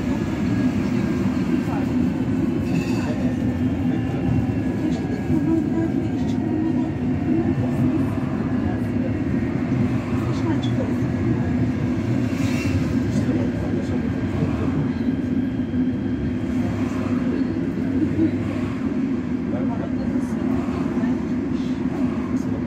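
Siemens B80 light-rail car heard from inside, running on the track and slowing into a station: a steady low rumble of wheels and running gear with a faint high whine and occasional clicks.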